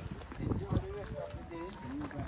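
Indistinct voices of people talking while walking, with light scuffs and clicks that could be footsteps.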